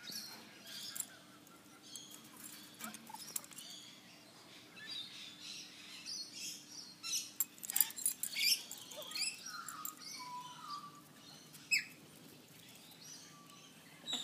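Small birds chirping off and on, mixed with scattered light scratches and clicks, the busiest and loudest stretch about eight to nine seconds in.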